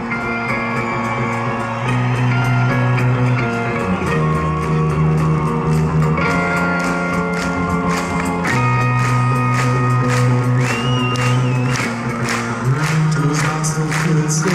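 A live rock band playing an instrumental passage: electric guitars and bass holding chords that change about every two seconds over a steady drum beat, with a high held lead note near the end.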